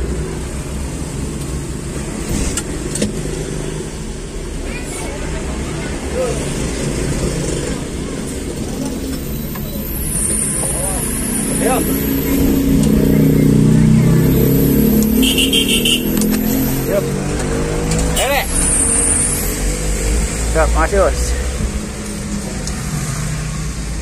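Engine and road noise of a moving vehicle heard from inside its cab, a steady low rumble with the engine pitch rising as it accelerates about halfway through and again a few seconds later.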